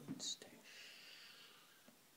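A person's quiet whispering voice, with a sharp 's' sound in the first moment, then a faint hiss that fades out about halfway through.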